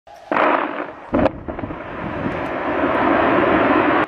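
Dynamite blasting at a hillside mine: a sudden loud bang, a second sharp bang about a second later, then a noise that swells and holds toward the end.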